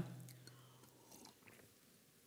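Faint sipping and swallowing of water from a drinking glass, otherwise near silence.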